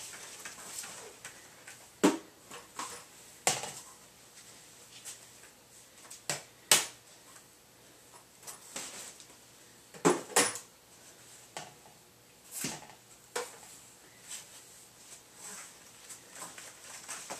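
Irregular knocks and clatters of hard objects being handled and set down, about eight sharp ones scattered through, the loudest about two seconds in, near seven seconds and about ten seconds in.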